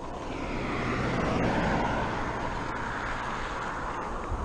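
A car passing on the road: tyre and engine noise that swells over the first second and a half and then holds steady.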